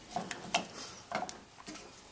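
A spatula stirring white chocolate into hot cream in a stainless saucepan, with faint, scattered scrapes and taps against the pan as the chocolate melts into the cream.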